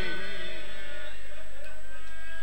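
A pause in a sung lament heard over a public-address system: the last wavering sung note fades out in the hall's echo during the first second. A steady electrical hum and hiss from the sound system carry on under it.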